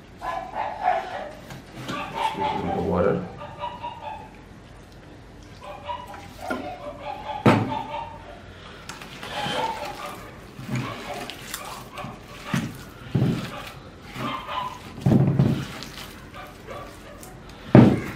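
Gloved hands kneading and pressing wet clay onto a stone slab, with several dull thumps as it is patted down; the loudest comes at the very end.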